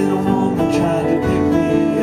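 Two acoustic guitars playing together in an instrumental break of a ragtime blues song, a run of plucked notes over a steady bass.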